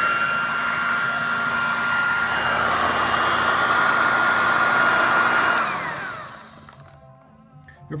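Royal Model 501 handheld vacuum cleaner running with a steady high whine over rushing air, in working order. It is switched off with a click a little past halfway, and the motor winds down with a falling pitch.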